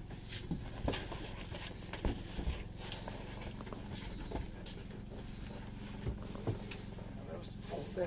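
Steady low hum of a portable generator running, with soft knocks and rustling of upholstered cushions and seat boards being moved and set in place.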